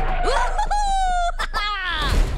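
A Minion's high-pitched cartoon voice letting out a long wailing cry. It rises, holds one note for about half a second, then breaks and slides down in pitch near the end.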